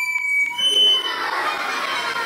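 Recorders piping a few high, pure notes that change pitch in steps, two at times overlapping, with small clicks at the note starts; from about a second in they give way to a jumble of children's recorder notes and voices.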